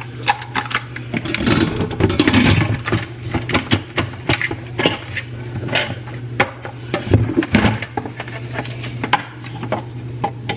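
Clicks and knocks of an Instant Pot being handled as its stainless lid is put on and turned shut, with a noisier clatter early on, over a steady low hum.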